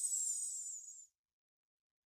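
A man's short sibilant hiss, high-pitched and breathy, with a slight downward slide, cutting off about a second in.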